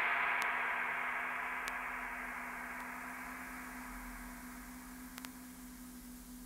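The hissing noise tail of an electronic track's final hit, fading slowly away over a steady low hum, with a few faint clicks. Lo-fi sampler recording.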